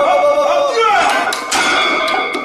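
A man's loud, drawn-out shout during a heavy barbell bench-press rep, its pitch falling about a second in.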